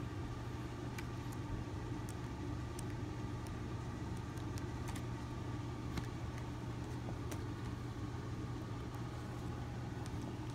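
A steady low mechanical hum, like a motor or appliance running, with a few faint ticks from paperback books being handled.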